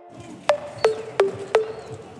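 Channel intro jingle: four sharp struck notes, each ringing briefly, at about three a second, over a faint background hiss.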